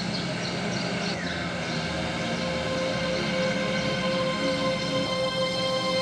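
Dramatic background score of sustained held notes, building and getting louder from about halfway through.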